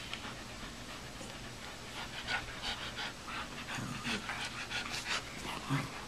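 A dachshund and a golden retriever play-wrestling, with soft dog panting and short, irregular breathy sounds from about two seconds in.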